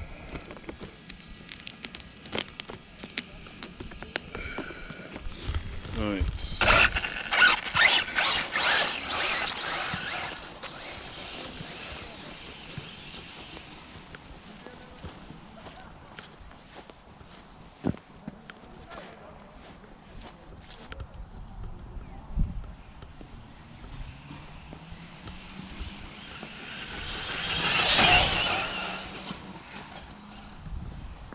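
FTX DR8 short-course RC truck with a Max8 brushless ESC and motor combo on 6S, launching hard across grass: a rising motor whine about six seconds in, then several seconds of rushing noise and chassis rattle over the bumpy ground. Near the end a second rising whine builds into a loud rush as it speeds up again.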